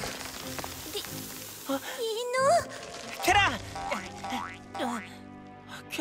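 Cartoon soundtrack: background music with short wordless vocal sounds that glide up and down in pitch, about two and three and a half seconds in. A hiss fills the first two seconds, as dust settles from fallen rocks.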